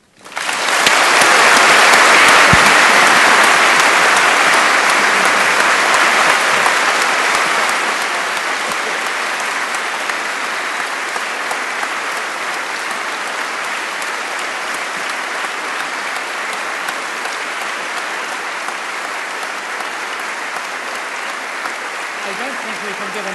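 A large audience applauding in a hall, breaking out suddenly and loudest over the first few seconds, then settling to a steady, slightly quieter clapping.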